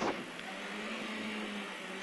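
BMW E30 M3 rally car's four-cylinder engine running at a steady pitch, with a steady hiss of tyre and gravel noise.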